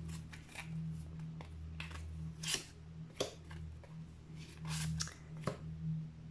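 Oracle cards being shuffled and drawn by hand, then laid on a table: a string of irregular short papery swishes and taps over a steady low hum.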